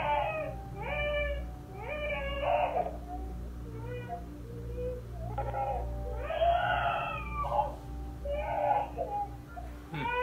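A two-year-old girl crying in a run of sobbing wails, picked up by a baby monitor, just woken and frightened. A steady low hum runs under the cries.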